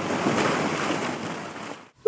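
A mass of small, hard gumballs rattling and shifting against each other as a doll is pushed through the pile, a continuous clatter that fades out near the end.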